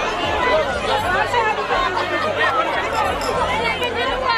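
Crowd chatter: many voices talking and calling out at once, overlapping, over a steady low hum.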